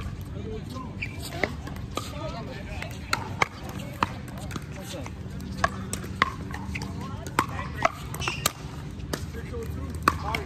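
Pickleball paddles striking a hard plastic ball: a series of sharp pocks at irregular intervals, some of them from rallies on other courts.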